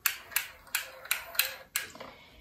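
A small retractable sewing tape measure being pulled out, clicking six times at an even pace of about three clicks a second as the tape is drawn out.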